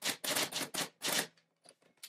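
Manual typewriter typing: a quick run of key strikes, about six a second, that stops about a second and a quarter in, followed by a few faint clicks.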